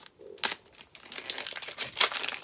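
Foil booster pack of trading cards being torn open by hand: a sharp rip about half a second in, then a run of crinkling as the wrapper is pulled back from the cards.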